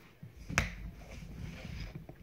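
A deck of tarot cards handled and shuffled by hand: a single sharp tap about half a second in, then a soft rustle of cards.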